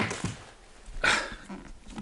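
A dog making two short sounds about a second apart, the first with a sharp knock.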